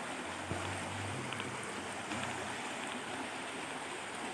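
Small river rushing steadily over a rocky riffle.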